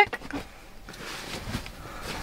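Soft rustling of pillows and bedding being shifted by hand, with a few light knocks just at the start.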